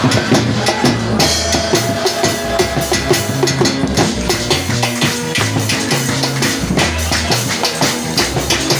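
Live church band music: a drum kit plays a steady, fast dance beat over a line of low bass notes.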